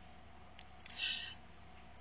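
A short, soft breath drawn in by the narrator about a second in, over a faint steady hiss of room noise.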